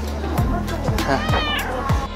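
A single cat-like "meow" about a second and a half in, laid over background music.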